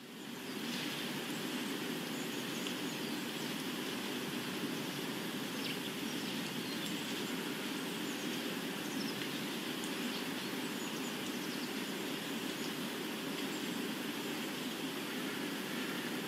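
Ambient outdoor soundscape: a steady rushing noise with a few faint bird chirps, fading in over the first half second.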